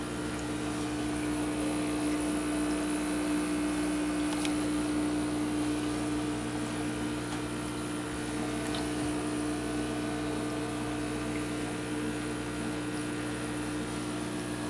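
Steady hum of an aquarium pump with water noise, holding several even tones throughout, and a couple of faint taps about four and a half and nine seconds in.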